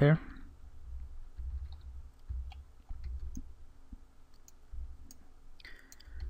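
A few faint computer mouse clicks, scattered at irregular intervals over a low background rumble.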